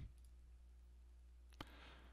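Near silence broken by a single computer mouse click about one and a half seconds in, followed by a faint short hiss.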